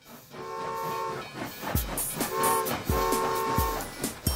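Cartoon steam-train whistle sound effect tooting three times: a long toot, then a short one and another long one. Under it, an evenly spaced thumping beat starts about halfway in.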